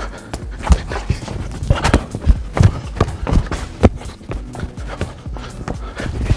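Football being juggled by foot: repeated dull thuds of the ball off the feet, irregular, about two to three a second, over faint background music.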